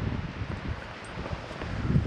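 Wind buffeting the camera's microphone: an uneven, gusty low rumble.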